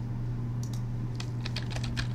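Computer keyboard typing: a quick run of keystroke clicks starting about half a second in, entering a terminal command, over a steady low hum.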